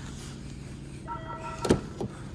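Car's rear door unlatching: a single sharp click near the end as the door handle is pulled and the latch releases, preceded briefly by a faint steady tone.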